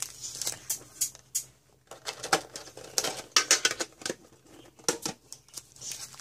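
Handling noise as foil Pokémon booster packs are taken out of a metal collector tin: irregular light taps, clicks and rustles, busiest in the middle.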